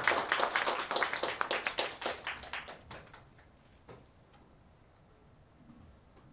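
Hand clapping from a small group of people, with the separate claps distinct. It thins out and dies away about three seconds in.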